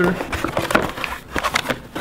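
Cardboard box being opened by hand: a run of irregular rustles, scrapes and light taps as the lid and paper insert are folded back over plastic-wrapped parts.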